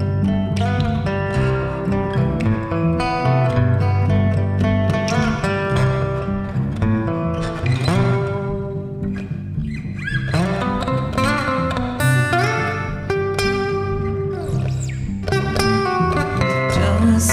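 Acoustic guitar and electric bass guitar playing an instrumental passage: picked guitar notes over a steady bass line.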